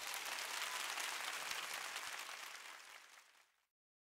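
Faint audience applause, a dense patter of many hands clapping, fading out about three seconds in.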